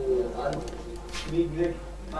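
Indistinct low voices of people talking in a small room, a few short murmured fragments over a steady low electrical hum.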